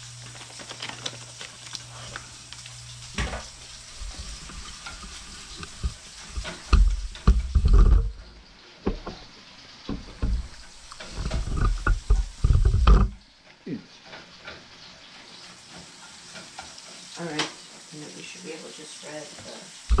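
A spatula stirring and scraping ground meat as it sizzles in a frying pan. Loud low rumbling thumps come in twice in the middle.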